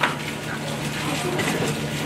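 Background chatter of children in a classroom over a steady low hum and room noise, with one sharp click right at the start.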